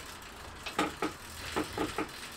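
Fixed-gear bicycle drivetrain turned over by hand: the chain running over the chainring and rear cog with a few light clicks, testing the freshly set chain tension.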